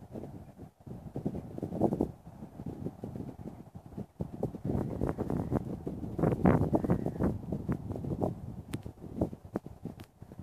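Wind buffeting the phone's microphone in uneven gusts, loudest about two seconds in and again from about five to seven seconds.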